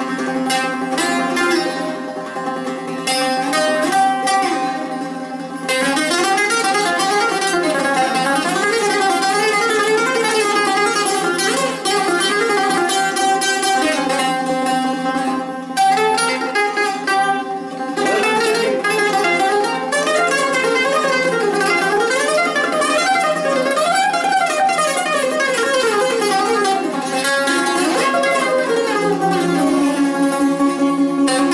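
Two bouzoukis playing together, a melody in the Ousak dromos (Greek mode) made of quick runs of plucked notes that rise and fall. The playing thins out briefly twice, about a few seconds in and about halfway through.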